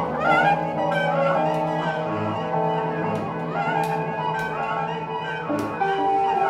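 Live band music in a slow, ambient passage: saxophone and other instruments holding long sustained notes over a steady low bass note, with a few sharp cymbal hits in the second half.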